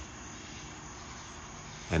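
A car driving past on a nearby road, heard as a steady, even rush of road noise.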